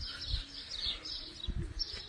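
Small birds chirping steadily in the background, with a couple of soft low thumps.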